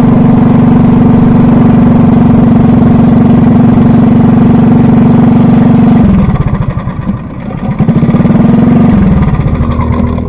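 Kart engine running steadily under power, heard from the driver's helmet camera. About six seconds in it drops off and wavers as the kart slows, picks up briefly about two seconds later, then eases down near the end.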